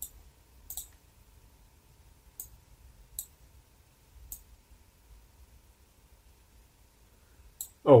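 Computer mouse clicking: about six single clicks spaced irregularly, roughly a second apart.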